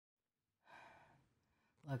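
Near silence with a faint, short breath about three-quarters of a second in, then a voice starts speaking at the very end.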